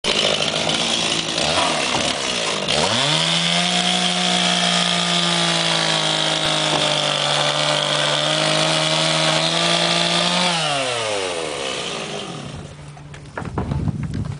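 Two-stroke chainsaw running at full throttle, cutting through old weathered barn boards. Its engine note dips and climbs back up about three seconds in, holds steady at high revs, then winds down and fades near the end, leaving a few knocks.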